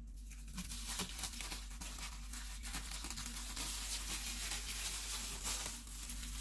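Plastic cling wrap being peeled off the frozen surface of ice cream in a plastic tub: a continuous crinkling and crackling that starts about half a second in and lasts about five seconds.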